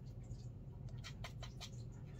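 A few light, quick ticks and scrapes of a paintbrush picking up pigment from a watercolour palette, bunched about a second in, over a low steady hum.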